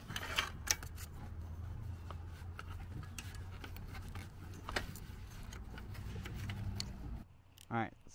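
Small clicks and light rattles of hands working a seat's wiring plug and metal seat frame loose, over a steady low hum. The hum stops abruptly shortly before the end, and a voice starts talking.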